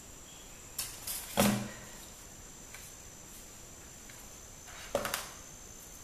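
Handling noises of a plastic airsoft pistol and its magazine being moved and laid into a foam box tray: a few soft knocks and clicks about a second in, and another pair near the end.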